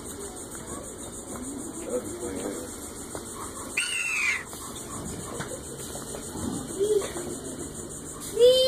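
Animatronic dinosaur's recorded call: one short, high, falling screech about four seconds in, with faint voices in the background.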